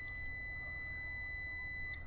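EG4 6000EX-48HV inverter's built-in buzzer giving one long, steady, high-pitched beep after its power switch is tapped to put it in standby. The beep cuts off near the end.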